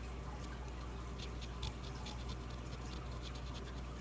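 A scratch-off lottery ticket being scratched: a run of light, irregular scratching strokes, faint over a low steady hum.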